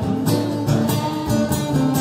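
Guitar played live, strummed in a steady rhythm of about three strokes a second.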